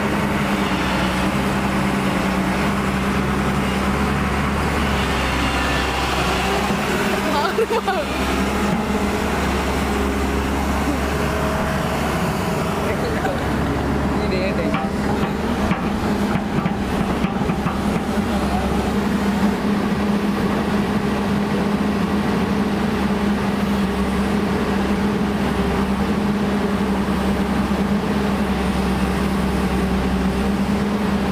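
Hyundai 210 crawler excavator's diesel engine running at a steady speed, an even, constant hum, with a brief rising and falling sound about eight seconds in.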